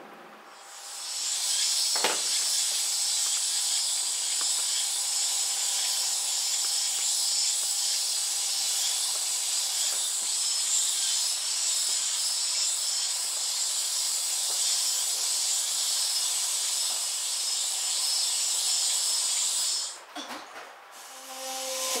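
Steady high-pitched hiss from an anime soundtrack played on a TV and recorded in the room, starting about a second in and cutting off shortly before the end, with a single click about two seconds in.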